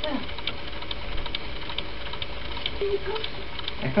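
Steady low mains hum and background noise of an old home tape recording, with faint ticks several times a second. A brief faint voice comes in near the end.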